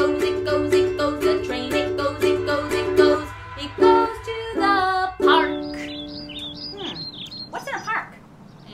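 Ukulele strummed in a fast, even rhythm of chords, stopping about three seconds in. A few held sung notes follow, then a woman's voice making short gliding sounds that rise and fall, fading near the end.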